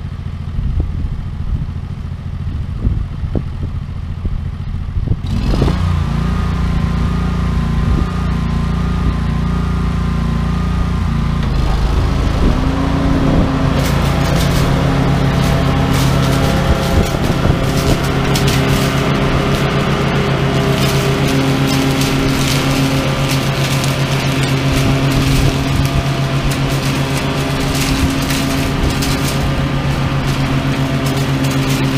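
A walk-behind lawn mower engine runs steadily under load and grows louder about five seconds in. From about twelve seconds in, dry locust pods and leaves being chopped under the deck add a dense crackling rattle.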